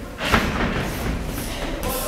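A single heavy thud in the boxing ring about a third of a second in, ringing on briefly in the large hall.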